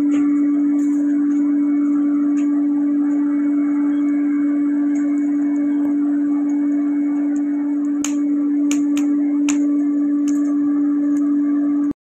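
Small electric air blower running at a steady hum, forcing air into a charcoal forge fire; about half a dozen sharp pops from the burning charcoal come in the last few seconds before the hum cuts off suddenly.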